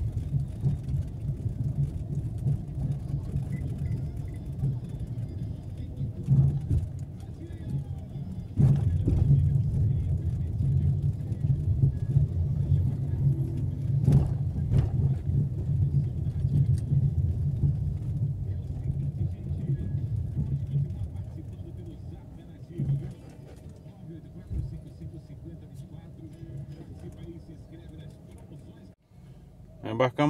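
Small car's engine and tyres giving a steady low rumble inside the cabin as it drives slowly over a rough, patched road, with a few sharp knocks from bumps. The rumble drops quieter over the last third.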